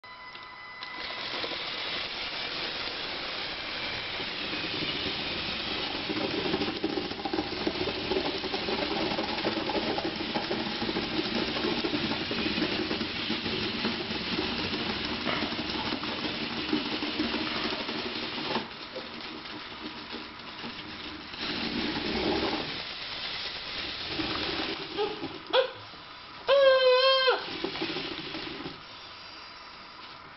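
LEGO Technic tank's Power Functions electric motors, gearing and rubber-padded plastic tracks running steadily as it climbs a steep ramp, for about 18 seconds, then in a few shorter stop-start runs. Near the end a short, loud, wavering voice-like call is heard twice, the loudest sound.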